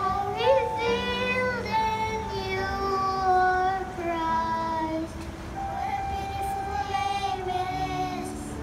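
A group of young children singing a slow song together into microphones, each note held for about half a second to a second.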